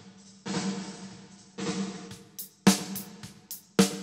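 Recorded snare drum played through a Lexicon 224 digital reverb plug-in set fully wet: three hits about a second apart, each followed by a long ringing reverb tail. In the second half, several sharper, brighter drum hits come quicker.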